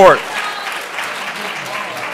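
Audience applauding: many people clapping steadily, just after the last word of a spoken thanks at the very start.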